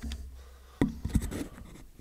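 Paper rustling and handling noise at a lectern microphone: a low rumble, then a few soft knocks about a second in.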